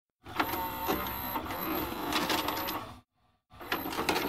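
Video cassette recorder mechanism whirring and clicking under a thin, steady high whine, in two spells separated by a brief silence near the end.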